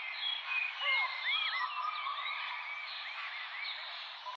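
A chorus of animal calls: many short, overlapping chirps that rise and fall in pitch, over a steady hiss.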